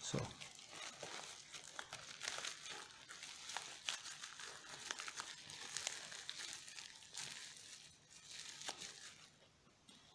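Plastic packaging (a poly mailer bag, clear plastic bags and bubble wrap) crinkling faintly as hands handle it, with scattered small crackles, dying down for the last two seconds.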